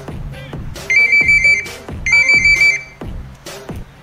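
Electronic telephone ringing: two warbling ring bursts about a second apart. Under it runs music with a steady thumping beat.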